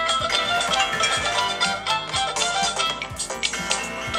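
Phone ringtone music: a melodic tune with a steady beat, from the smartphones receiving incoming calls.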